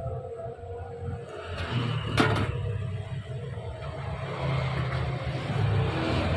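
Electric fan motor running bare on the bench with a steady low hum, working again after its winding repair. A single sharp click about two seconds in.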